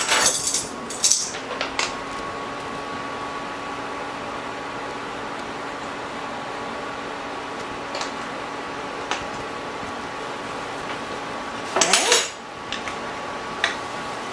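Metal measuring spoons clinking and knocking against a spice jar and a skillet, loudest in the first two seconds and again near the end, with a few single ticks between. Under them runs the steady hum of a countertop electric hot plate that has just been switched on.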